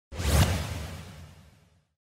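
A whoosh sound effect for a logo intro, with a deep low end. It swells quickly to a peak just under half a second in and fades away over the next second and a half.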